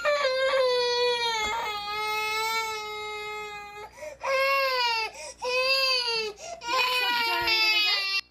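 An infant crying in three long wails, each dropping in pitch at its end: the protest cry of a baby whose picture book is being taken away.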